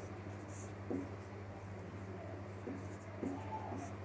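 Marker pen writing on a whiteboard: faint scratchy strokes and a brief squeak, heard over a steady low electrical hum.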